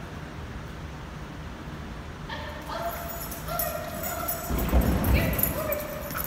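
A dog barking and yipping excitedly in repeated short, high calls from a couple of seconds in, with a dull low thump near the middle.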